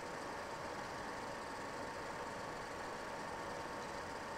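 Steady low background hiss with a faint hum: the recording's noise floor, with no distinct event.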